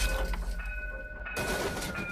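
Low rumble of an animated crash sound effect dying away, with faint thin ringing tones held over it.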